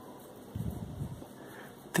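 Faint, low rustling of cotton yarn being drawn through with a crochet hook by hand, starting about half a second in and lasting about a second.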